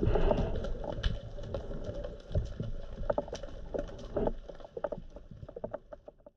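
Underwater sound through a camera housing: a low rumble of moving water with many irregular small clicks and knocks, fading out toward the end.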